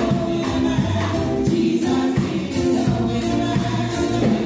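Three women singing a gospel song in harmony into microphones, over instrumental accompaniment with a steady beat.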